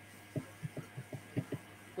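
A quick run of about seven soft, low thumps, roughly five a second, over a faint steady low hum.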